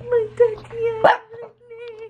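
Small dog whining in a long, wavering high whine, broken by a sharp yip about halfway through.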